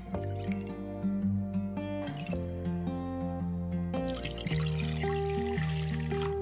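Background music over liquid being poured into a stainless steel mixing bowl: a small pour of vinegar near the start, then a stream of water running into the bowl for the last two seconds.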